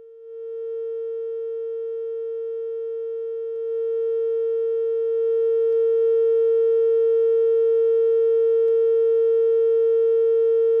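A single steady electronic tone, a broadcast line-up or test tone on the court video feed. It steps up in loudness a couple of times in the first six seconds, then holds level.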